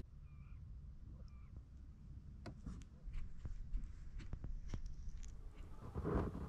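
Quiet outdoor ambience: a steady low rumble, two faint bird chirps in the first second and a half, and scattered soft clicks later on.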